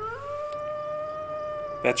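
A wolf howling: one long call that rises at the start and then holds a steady pitch.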